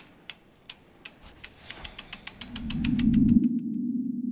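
Logo sting sound effects: a run of sharp ticks that speed up like a ratchet winding, under a low swell that builds to a peak about three seconds in. As the ticks stop, it settles into a steady low drone.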